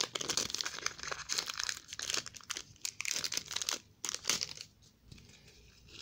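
Foil trading-card pack wrapper being torn open and crinkled by hand, a dense crackling rustle that thins out about four seconds in.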